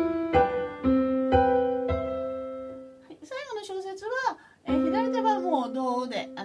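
Yamaha Electone electronic organ playing a quick run of simple chords (tonic, subdominant, dominant), about five strikes in the first two seconds, each ringing and fading away. From about three seconds in, a woman's voice with sliding pitch comes in, over a held chord near the end.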